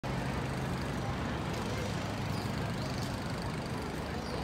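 Steady city street noise of road traffic, with a continuous low drone and no distinct events.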